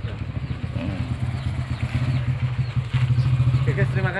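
Motorcycle engine idling steadily, a low fast pulsing that grows a little louder about three seconds in.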